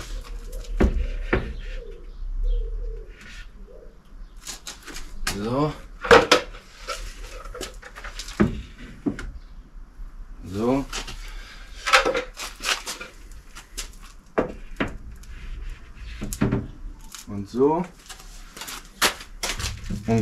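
Film-faced plywood panels being stood up and fitted together in a car's cargo area: repeated knocks, clatters and scrapes of wood on wood and on the floor, with a few short creaks.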